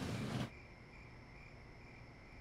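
Rumbling street-traffic noise cuts off abruptly about half a second in, leaving faint crickets chirping steadily in a thin, pulsing trill.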